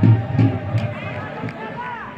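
A man's low voice talking indistinctly close to the microphone, in short pulses during the first second and a half, over distant shouts from football players and spectators.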